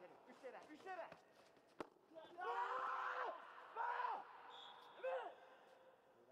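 Men's shouts at a karate kumite bout. A single sharp thump comes just under two seconds in, then one drawn-out shout and two shorter ones follow.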